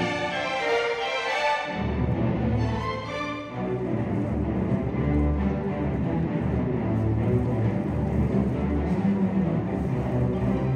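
Youth string orchestra playing: violins and violas alone for the first second or so, then the cellos and basses come in underneath about two seconds in and the full ensemble carries on.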